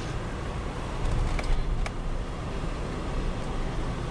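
Vehicle driving slowly over a snow-covered road, heard from inside the cabin: a steady low rumble of engine and tyres, with a couple of faint clicks about a second and a half in.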